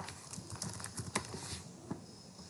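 Computer keyboard typing: a short, irregular run of light key clicks, with a sharper click at the very start.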